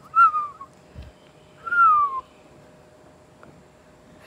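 A person whistling two short notes about a second and a half apart, each sliding down in pitch, as a call to a horse, with a faint low thump between them.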